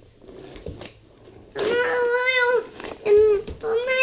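A young child's high-pitched wordless vocalising: one drawn-out call lasting about a second, then two shorter calls near the end.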